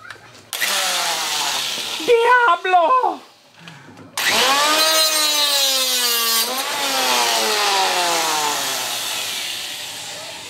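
Electric angle grinder with a cutoff disc spinning up and cutting through a steel control cable on an outboard, throwing sparks. It runs in two bursts, the second and louder starting about four seconds in, then its whine falls slowly in pitch as it winds down.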